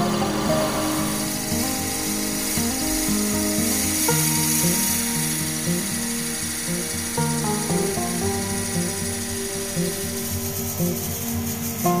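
A twist drill boring into a spinning wooden pen blank on a lathe: a steady cutting hiss as the bit chews through the wood and shavings pour out. Background music with sustained, changing notes plays over it.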